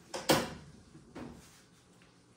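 A drawer sliding, with one sharp knock about a quarter second in and a softer knock about a second later.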